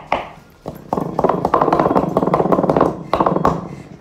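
Wooden spoon working stiff shortbread dough in a mixing bowl: rapid tapping and scraping against the bowl. It starts about a second in and stops shortly before the end.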